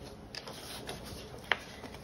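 Faint handling of loose paper planner pages, with a sharper single click about one and a half seconds in.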